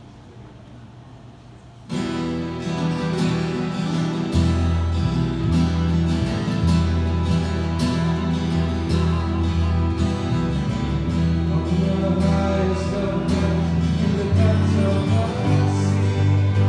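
Strummed acoustic guitar with a steady bass line starts a hymn suddenly about two seconds in, after a short quiet pause.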